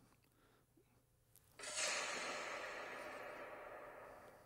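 Near silence, then about one and a half seconds in, the opening sound of a lesson video playing in the iPad app starts suddenly: an airy whoosh that fades slowly over about two seconds.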